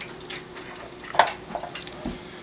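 Wire roasting rack rattling and knocking in a metal roasting pan as a 20 lb turkey is flipped over and set back down on it. There are a few knocks, and the sharpest comes about a second in.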